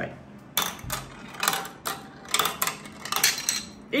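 A glass marble rattling down a plastic marble-run tower and knocking small plastic dominoes that clatter over on a plastic staircase: an irregular run of light clicks and clacks starting about half a second in. Only the first dominoes topple and the chain stops.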